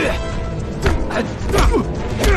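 Kung fu fight sound effects: sharp punch and grab impacts at the start, a little under a second in and about a second and a half in, with strained grunting between them, over background music.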